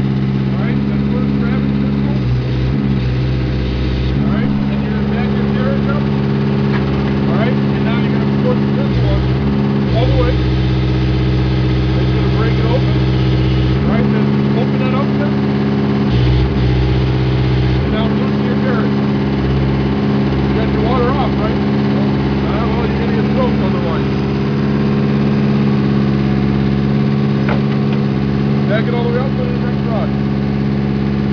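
Horizontal directional drill's engine running steadily under load, its note shifting every few seconds as the drill rod is pushed into the ground.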